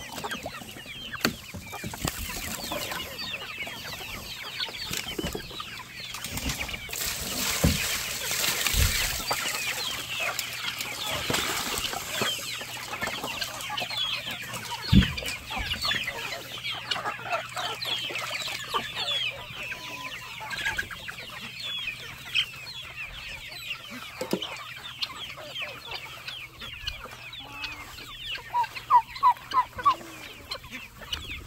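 A flock of young chickens and turkey poults peeping and clucking, many high chirps overlapping the whole time. A couple of dull knocks sound partway through, and near the end a quick run of about five louder calls.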